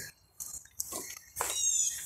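A domestic cat meowing briefly about a second and a half in, among a few short handling noises.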